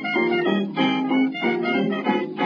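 Lively instrumental music with piano and violin, its notes changing every fraction of a second. It sounds thin, with no deep bass.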